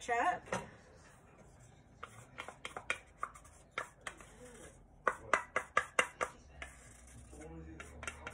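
Wooden spatula tapping and scraping ketchup out of a plastic cup held over a pan: a run of sharp taps, loudest and quickest about five to six seconds in.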